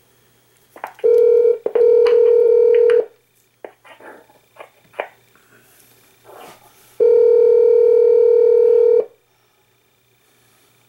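Telephone ringback tone heard over the phone line: two rings, each about two seconds long, about four seconds apart. The line is ringing at the far end and has not yet been answered. Faint clicks fall between the rings.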